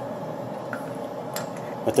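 A couple of faint, light metallic clicks as a small turned-brass nozzle tip is handled at the coolant fitting, over a steady background hum.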